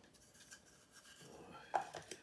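Faint handling of a small plastic electric coffee grinder as it is readied: a light tick about half a second in and a sharper click near the end as the top goes on.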